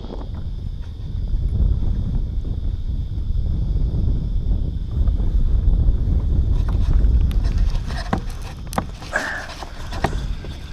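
Wind rumbling and buffeting on the microphone, uneven and strongest in the low range, with a few sharp clicks near the end.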